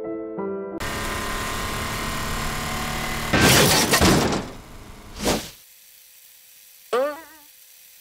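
Cartoon sound effects: a held musical sting, then a loud crash with breaking and shattering noise about three and a half seconds in, and a second, shorter hit a couple of seconds later. Near the end there is a brief wavering pitched cry.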